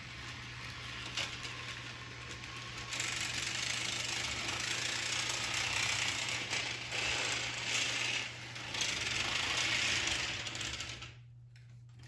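HO scale model locomotive running on its track, the motor, gears and wheels making a steady mechanical running noise while it pulls a second engine. It grows louder about three seconds in and stops about a second before the end.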